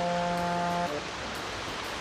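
A single steady pitched tone held for about the first second and cutting off suddenly, followed by the soft steady rush of a slow-flowing creek.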